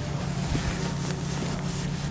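Felt whiteboard duster rubbing across a whiteboard, wiping off marker writing in repeated strokes.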